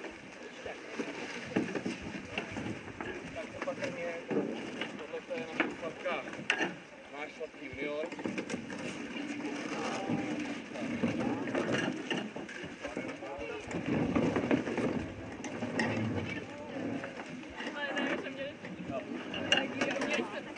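Children talking and calling out over one another, with scattered knocks and scrapes as a canoe hull is dragged and pushed into the water.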